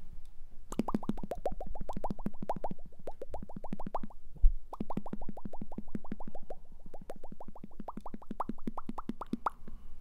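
Cartoon bubble sound effect: fast runs of rising bloops, about nine a second, in two bursts of three to five seconds. A single low thump falls between them.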